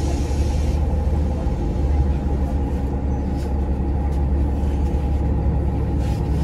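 City bus engine idling while standing at a stop, heard inside the cabin as a steady low rumble and hum. A hiss of released air fades out about a second in.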